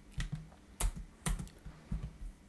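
Typing on a computer keyboard: a few separate keystrokes at uneven intervals.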